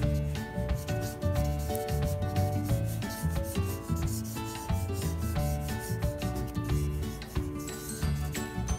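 Marker pen scribbling rapidly back and forth on paper in quick scratchy strokes, laying down dark shading, over background music.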